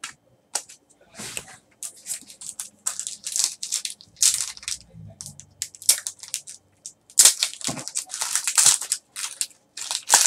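Foil wrapper of a trading-card pack crinkling and tearing as it is opened by hand, in irregular bursts of rustling that grow denser and louder over the last few seconds.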